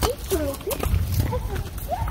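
Short, indistinct bits of voices, a few brief sliding vocal sounds rather than clear words, over a low rumble.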